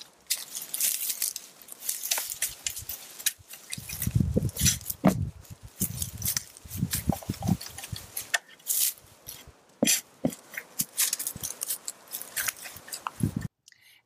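A five-tined broadfork being worked into loose garden soil and straw mulch, giving irregular crunching and crackling as the tines are stepped in, rocked and levered back, with heavier, lower crunches midway. The sound cuts off suddenly near the end.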